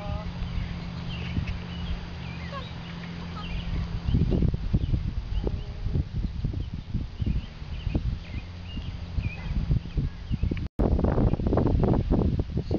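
Hoofbeats of a horse trotting on a lunge line over soft sand arena footing: repeated muffled low thuds that begin about four seconds in, with small birds chirping and a steady low hum before the hoofbeats start. The sound cuts out for a moment near the end.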